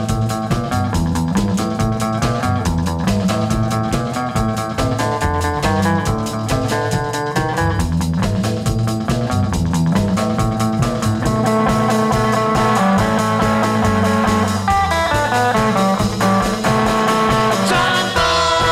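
Instrumental break of a rock song: a guitar plays a lead line over a stepping bass line and drums keeping a fast, steady beat.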